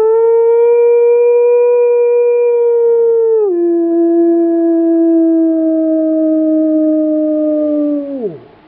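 One long wolf-style howl, the kind used to call wolves in: it holds a steady high note, drops to a lower note about three and a half seconds in, sinks slowly, and falls away at the end.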